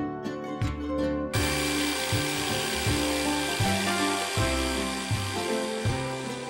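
Plucked-string background music, joined about a second in by a hand-held power drill running with a steady hissing grind as a file shapes a nail spinning in its chuck; the grinding stops near the end.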